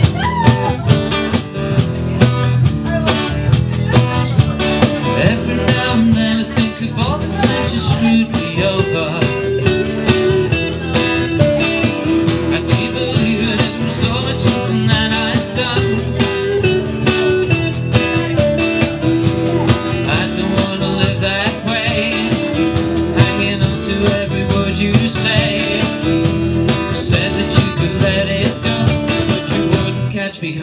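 Live acoustic band playing: strummed acoustic guitar, a hollow-body electric guitar, upright double bass and a cajón keeping a steady beat.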